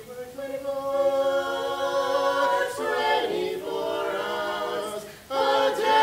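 Four-voice a cappella group, one man and three women, singing sustained close-harmony chords without instruments. The chords break off briefly twice, and a louder chord comes in about five seconds in.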